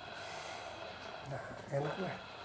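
Brief low vocal sounds during a back massage: a short grunt-like murmur about 1.3 s in and a louder one near the end.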